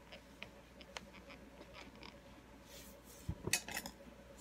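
Faint scattered ticks, then near the end a quick cluster of sharper clicks with a soft knock: a plastic spoon and a paper instant-noodle cup being handled.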